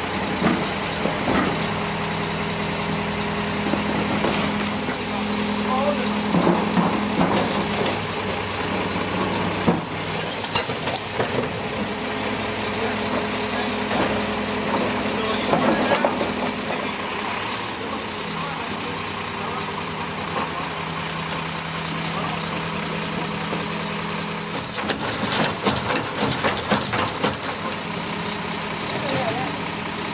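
Leach rear-loader garbage truck running with its engine and hydraulic packer working, a steady hum that steps down in pitch about two-thirds of the way through. Bangs and clatter of trash and furniture being dropped into the rear hopper and pushed in by the packer come around the middle and again near the end.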